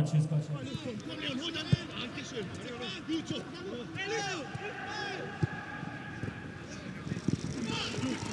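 Footballers' shouts and calls on the pitch, many short cries over a steady open-air background, with a few sharp thuds of the ball being kicked.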